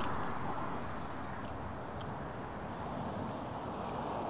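Steady rushing noise of a Veteran Lynx electric unicycle rolling along a concrete sidewalk, tyre noise and wind on the microphone together, with no clear motor whine.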